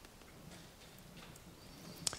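Near silence: hall room tone with a few faint ticks.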